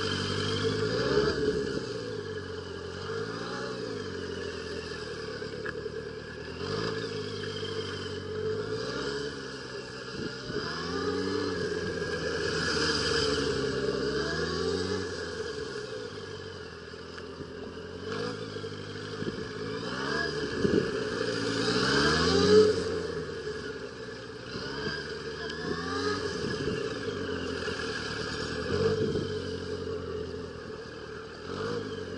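Yamaha FZS1000's inline-four engine revving up and falling back again and again, every two seconds or so, as the motorcycle accelerates and slows between tight cone turns. The loudest rev comes about three-quarters of the way through.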